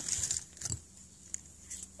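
Small plastic toy capsule and toy parts being handled: a few short rustles and clicks in the first second, then a single faint click about halfway through.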